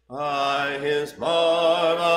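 A cappella hymn singing led by a man's voice: two held sung notes, with a short break between them a little over a second in.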